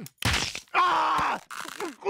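A voice-acted strained, choking groan from a cartoon dog being throttled by his collar: a short rough burst, then a longer held groan about a second in, and a brief weaker gasp near the end.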